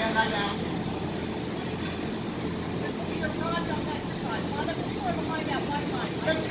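Indistinct chatter of many people in a large hall, no single voice clear, over a steady low background rumble.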